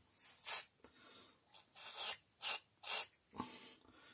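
Aerosol can of penetrating lubricant sprayed in about five short hissing bursts onto the gear and bearings of an opened hand mixer.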